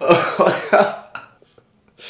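A short burst of laughter: three or four sharp, breathy, cough-like bursts in the first second, fading away after.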